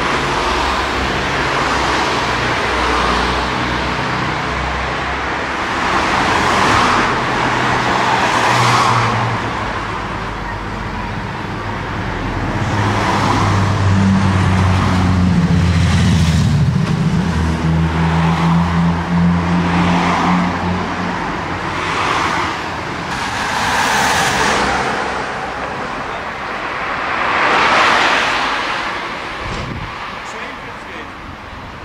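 Road traffic on a street: cars passing one after another, each swelling and fading within a couple of seconds. In the middle, a deeper engine drone is the loudest sound and shifts in pitch for a moment.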